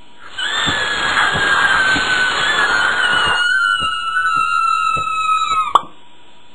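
Cartoon suction sound effect: a loud hiss with a high whistling tone that slowly sinks in pitch. The hiss drops away about halfway through, and the whistle swoops sharply down and cuts off near the end, as the anteater's snout sucks up the ants.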